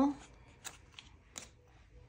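Crisp paper banknotes being handled and laid down on a desk mat: a few faint, short paper rustles and snaps.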